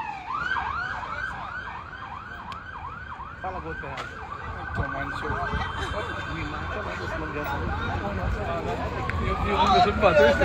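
Emergency vehicle siren: fast yelping sweeps, about three a second, for the first few seconds, then a steady high wail that starts rising again and grows louder near the end.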